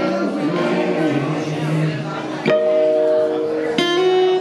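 Live song on electric and acoustic guitars with a voice singing in the first half; a strummed chord rings out about two and a half seconds in, and another is struck near the end.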